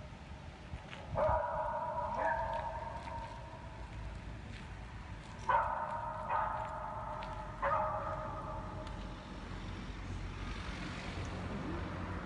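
Beagles in breeding kennels baying: four drawn-out calls, one about a second in and three more close together in the middle, over a low background murmur.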